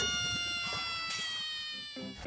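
Rhinoceros call used as a sound effect: one long, high cry with many overtones, its pitch sliding slowly down as it fades away.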